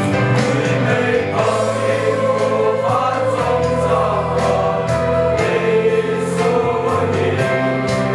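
Mixed choir of young men and women singing a Christian hymn.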